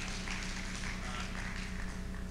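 Congregation responding in a pause of the sermon: faint clapping and scattered voices calling out, over a steady low hum.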